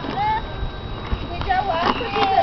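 High-pitched young children's voices calling out briefly, over a low rattle of small plastic-wheeled kick scooters rolling on asphalt.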